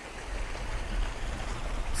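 Steady low rumble and road noise of a vehicle driving on a gravel road, heard from inside the cab.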